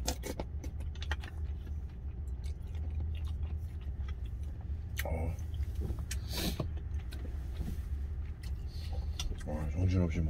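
A vehicle engine idling in a steady low hum inside a truck cab, under eating sounds: soup sipped from a spoon at the start, then chewing with scattered small clicks and a short hissing noise about six seconds in.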